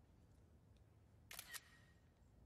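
Near silence: quiet room tone, broken by one brief double click about one and a half seconds in.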